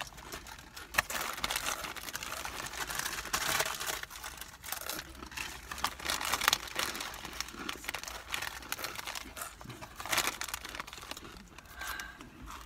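Chip bags crinkling and rustling as they are handled, with irregular crackles throughout and a sharp click about a second in.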